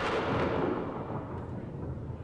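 A dramatic boom sound effect in the soundtrack: one heavy hit right at the start that rings on and fades away.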